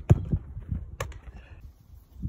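Two sharp thumps of a football about a second apart, the first the louder: the ball being struck, then meeting the keeper's hands or the goal. Under them runs an uneven low rumble of wind buffeting the microphone.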